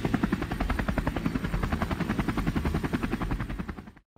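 Cartoon helicopter sound effect: rotor blades chopping in a rapid, even beat that dies away over the last second.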